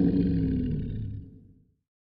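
The tail of a dinosaur roar sound effect, dying away and gone about a second and a half in.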